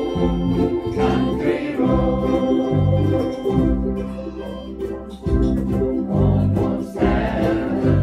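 Ukulele group strumming chords together, with a harmonica playing sustained notes over them in a passage without clear singing. The music eases off briefly about halfway through, then comes back at full level.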